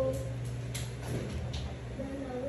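Steady low hum with a couple of faint, short clicks from handling a metal crochet hook and yarn.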